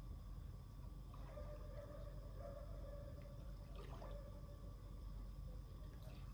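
Faint water sounds of someone swimming in an outdoor pool, over a steady low hum. A faint held tone runs from about one to four seconds in, with a small click near the end of it.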